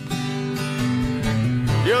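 Acoustic guitar playing sustained chords in a live acoustic rock ballad, the notes stepping in the low end between sung lines; a male voice comes in singing right at the end.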